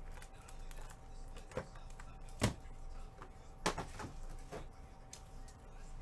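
Handling noise as a cardboard box is opened and a plastic graded card slab is taken out: scattered clicks and taps of plastic and cardboard, the loudest knock about two and a half seconds in, over a faint steady hum.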